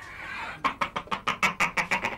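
A person laughing, a run of quick, evenly spaced 'ha-ha' pulses, about seven a second, starting about half a second in.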